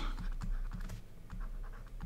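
Stylus tapping and scratching on a tablet's writing surface while handwriting a few words: light, irregular clicks and scrapes.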